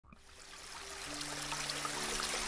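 A stream running over rocks, fading in from silence. Faint steady low tones join about a second in.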